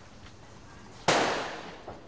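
A single shot from a prop handgun firing a blank: one sharp crack about a second in, dying away in a short echo.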